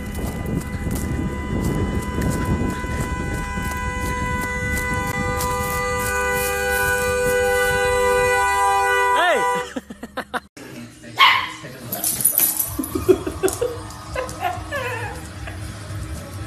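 A steady sound of several held tones over wind noise slides down in pitch and stops about nine seconds in. Then a dog vocalizes in wavering, whining howls and yips.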